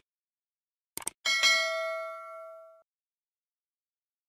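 Subscribe-button animation sound effect: a quick double mouse click about a second in, then a bright bell ding that rings for about a second and a half and cuts off sharply.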